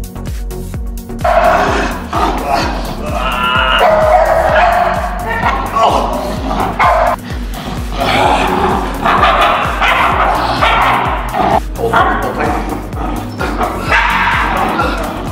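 Background music with a steady low beat. From about a second in, a young dog makes dog sounds as it bites and tugs at a padded bite sleeve.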